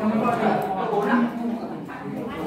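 Indistinct talking of several students' voices, classroom chatter with no single clear speaker.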